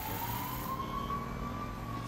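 Emergency-vehicle siren blaring in a cartoon's city street scene: one slowly rising wail that levels off, over a low steady rumble of city background noise.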